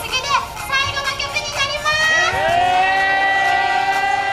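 Young women's voices talking excitedly through microphones and a PA. About two seconds in, one voice rises into a long, drawn-out high cry held steady for about two seconds, as the others laugh.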